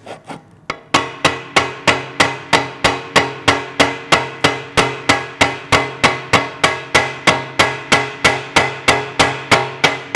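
Small hammer striking the sheet steel of an oil pan around its drain-plug hole. After a couple of single taps it settles about a second in into a steady run of quick blows, about three to four a second, each with a short metallic ring from the pan.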